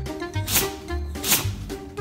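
Two short, sharp nasal bursts about three quarters of a second apart: a corgi's fake sneezes, done on command. Background music with a steady bass beat runs underneath.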